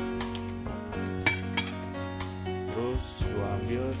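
Metal spoon clinking against a ceramic plate in a few sharp clinks while food is arranged, the loudest a little over a second in. Steady background music plays underneath.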